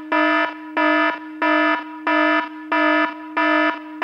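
Electronic alarm-style warning beep: a buzzy, steady-pitched tone repeating evenly, about six beeps in a row, roughly one and a half per second.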